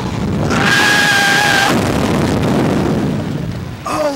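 A slingshot reverse-bungee ride capsule launching: a loud rush of wind over the on-board microphone as it shoots upward. A steady high note is held for about a second near the start.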